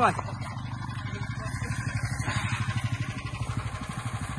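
DraXter C380 motorized snow scooter's small engine running steadily with a fast, even throb, the machine stuck in deep snow.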